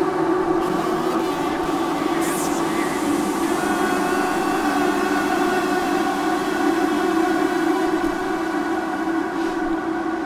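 A sustained, dense droning chord of many held tones, steady with no beat or melody, with a brief hiss about two seconds in.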